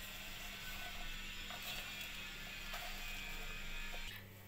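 Sweet corn kernels being tossed and mixed by hand on a steel plate with their flour and spice coating: a soft, continuous rustle and rattle of kernels against the metal, with a few faint ticks.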